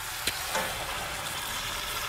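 Beef stock pouring from a glass measuring jug into a hot steel stew pot of short ribs and vegetables, a steady hiss and sizzle with a light click about a quarter second in.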